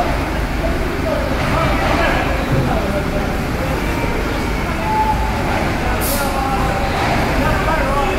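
Vehicle engines running on a ferry's enclosed steel car deck as cars and trucks drive off, a steady rumble with voices in the background. A short hiss comes about six seconds in.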